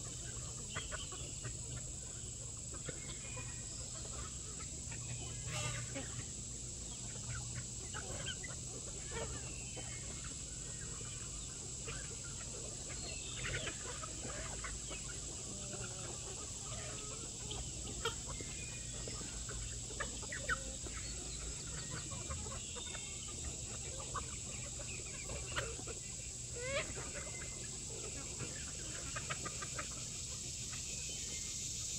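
A large flock of chickens clucking and calling while they feed: many short overlapping calls, with a few louder ones in the second half.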